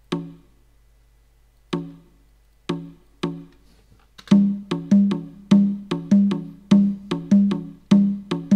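Sampled conga drum hits from a software drum kit. A few single strikes come spaced apart, then from about four seconds in a steady repeating conga rhythm plays, built on a triplet grid so that three notes fall on each beat.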